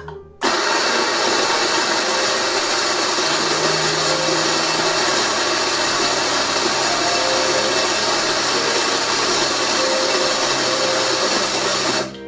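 Eureka Mignon electric coffee grinder running, grinding espresso beans: it starts abruptly about half a second in, runs at a steady loud level for about eleven seconds, then cuts off.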